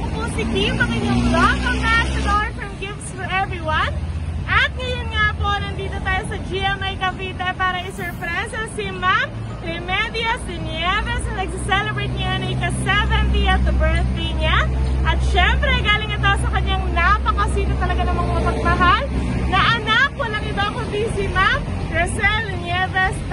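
A woman talking continuously, with a low rumble of street traffic behind her.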